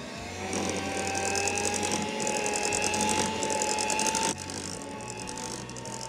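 Electric hand mixer running with its beaters in thick butter-cake batter: a steady motor whine that creeps up slightly in pitch, over a fast, even gear rattle. About four seconds in it drops in level and carries on more quietly.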